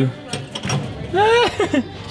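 A short high-pitched laugh from a man, rising then falling in pitch, with faint light clinks from metal garden figurines being touched.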